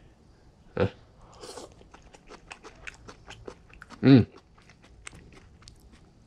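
A person chewing a mouthful of Cantonese fried rice with lettuce close to the microphone: a quick run of small, crisp crunches and mouth clicks for several seconds.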